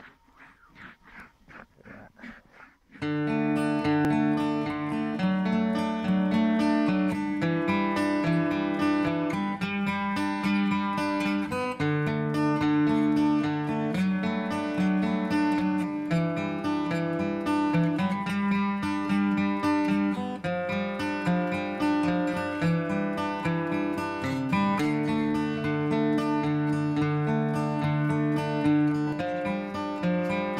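Faint, evenly paced footsteps for the first few seconds, then strummed acoustic guitar music cuts in suddenly and plays steadily.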